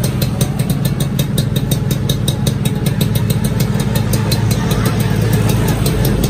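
Suzuki RGV 120 (Xipo) two-stroke single-cylinder engine idling steadily. It is heard close to its aftermarket silencer, with an even, rapid exhaust pulse.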